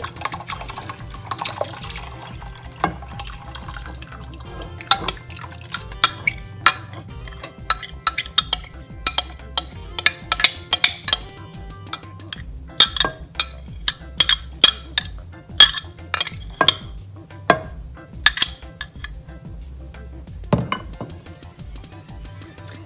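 Liquid poured into a pot of broth, then many sharp clinks and taps of a glass measuring jug and utensils against the pot as the last of the blended cilantro is emptied out. Background music plays throughout.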